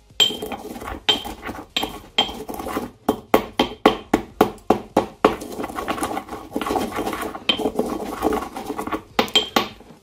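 Ceramic pestle knocking and grinding in a ceramic mortar, crushing dry flakes of graphite-filled styrofoam plastic into small pieces. The strikes come in a quick run around the middle, then give way to steadier scraping, with a few more knocks near the end.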